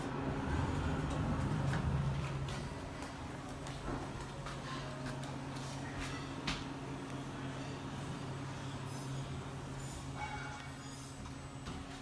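Thyssen Krupp Signa 4 passenger elevator running with a steady low hum that eases off after about two seconds as the car settles at the floor, then its doors sliding open with a few sharp clicks.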